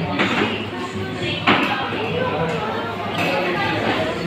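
Café background chatter from other customers, with music underneath and a steady low hum, and a single sharp click about one and a half seconds in.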